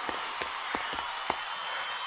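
Applause at the finish: an even patter of clapping with a few sharper, louder claps standing out.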